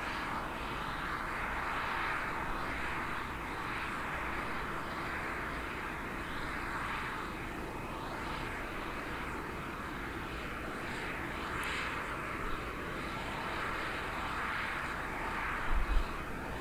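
Steady jet-turbine rushing noise on an airfield flight line, swelling and easing slightly, with a brief thump at the very end.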